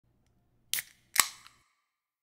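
An aluminium soda can of Mountain Dew being cracked open: a sharp click about three-quarters of a second in, then a louder pop with a short fizzing tail about half a second later.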